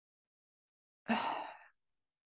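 A woman's single short sigh about a second in, a breathy exhale that fades out over about half a second.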